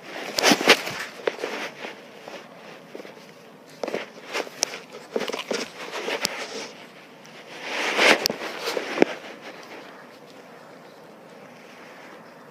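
Irregular scuffles, clicks and knocks in three bursts, near the start, around four to six seconds and around eight to nine seconds: a bulldog at play with a hand on a tile floor, mixed with handling noise on the phone.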